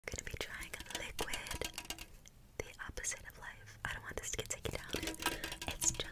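Close-mic ASMR whispering, mixed with quick, irregular taps and clicks of long fingernails on an aluminium drink can.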